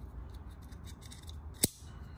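A single sharp click about one and a half seconds in, over faint rubbing and ticking, as the airsoft Glock 19's metal magazine is handled.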